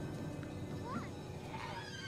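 Quiet episode soundtrack: soft background music with a short gliding call about a second in and a few more gliding calls near the end.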